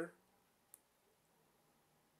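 Near silence, with a single faint, short click about three-quarters of a second in.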